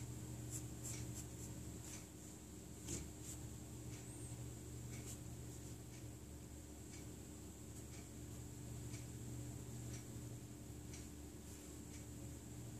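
Mechanical pencil drawing on paper: a series of short, faint scratching strokes, over a steady low hum.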